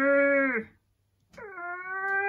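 A woman's two long, strained effort groans, like someone pushing something heavy. The first holds a steady pitch and then drops off; the second starts past the middle, slides down and then holds.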